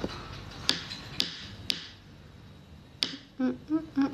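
Sharp single taps of a pen on a hard surface: three about half a second apart, then another after a pause of more than a second. A few short vocal sounds follow near the end.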